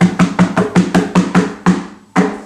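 A hand drum roll: both palms slap a cloth-covered tabletop in a quick, even run of about five strikes a second, each a dull thud.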